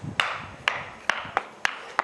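Single-tooth wooden geta (ippongeta) clacking as the wearer steps down, about five sharp wooden knocks, unevenly spaced.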